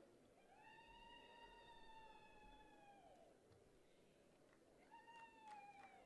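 Near silence, with two faint, drawn-out high-pitched tones: a long one of about two and a half seconds that dips at its end, and a shorter one near the end.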